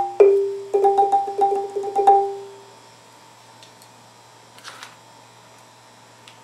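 Khmer roneat, a boat-shaped xylophone with wooden bars, struck with two mallets. It plays a closing phrase of quick repeated notes, and the final note rings out and dies away about two and a half seconds in. A faint knock follows near the end.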